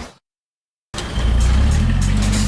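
The end of a punch hit fades out at the very start; after a short silence, about a second in, a cartoon car engine starts running with a loud low rumble, with music.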